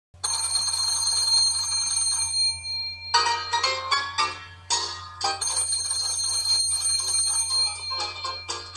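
An old telephone's bells ringing in a long steady ring that stops about two and a half seconds in. A quick run of musical notes follows, and the bells start ringing again about five and a half seconds in.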